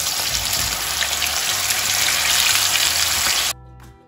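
Marinated chicken pieces sizzling as they shallow-fry in hot oil in a frying pan, a dense crackling sizzle that cuts off abruptly about three and a half seconds in. Background music with low bass notes runs underneath and is left alone at the end.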